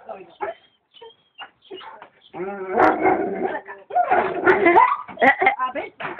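A dog barking, with thin high whines in the first couple of seconds, mixed with a woman laughing.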